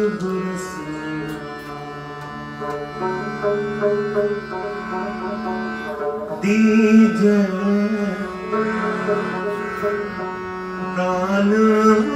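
Sikh devotional kirtan in raag: harmonium and bowed strings (saranda, taus) sustain a melody with plucked rabab and tabla. A man's voice sings over them about halfway through and again near the end.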